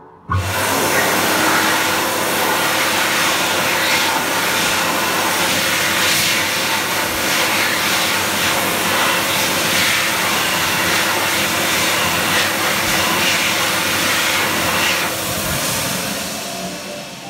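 Sensor hand dryer in an Exeloo Duraclenz WS 400-650 stainless steel wash basin, set off by a hand under the outlet: it starts suddenly and blows a loud, steady rush of air with a constant hum, then begins to die away near the end.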